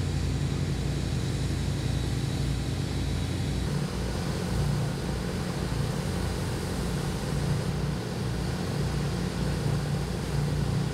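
Steady low machinery drone of engine-driven equipment running at a floodlit excavation site, with a constant deep hum and no breaks.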